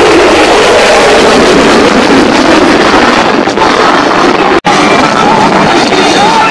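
F-35A's single Pratt & Whitney F135 afterburning turbofan engine heard loud as the jet passes. It is a dense rushing noise whose pitch falls at the start.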